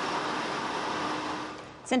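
Steady whoosh of data center server and cooling fans, with a faint steady hum, fading away near the end.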